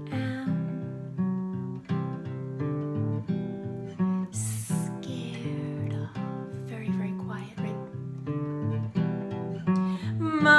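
Acoustic guitar playing a steady, evenly repeating chord pattern, with a short hiss about four seconds in.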